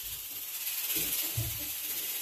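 Steady hiss of steam from a pot of beans cooking on the stove, with a couple of faint low thuds of a plastic container lid being handled about a second in.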